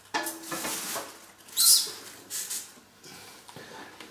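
Short squeaks and a quick scraping rustle from hands handling the packing protection on a wooden bass drum shell and its hoop.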